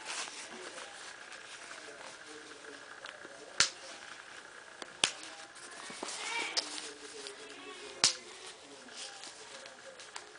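Plastic snaps on a cloth diaper cover being worked by hand to the largest setting: three sharp snap clicks spread over several seconds, with soft fabric rustling between them.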